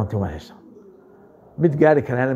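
A man speaking in Somali, broken by a pause of about a second in which faint bird cooing is heard; the speech picks up again near the end.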